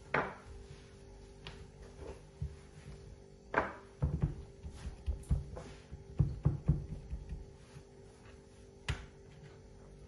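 A wooden rolling pin knocks and rolls on a wooden cutting board as a disc of dough is rolled out, followed by soft irregular thumps as fingertips press dimples into the dough against the board. The knocks come unevenly, with a sharp one at the start and a cluster of thumps in the middle.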